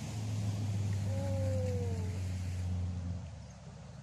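A motorboat's engine drones steadily across the lake and fades away about three seconds in, as the boat passes. Partway through, a single short falling call sounds faintly over it.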